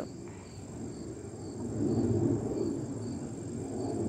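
Insects trilling steadily in the background, a thin high tone with faint regular pulses. Over it a low rustling noise swells about two seconds in and then eases.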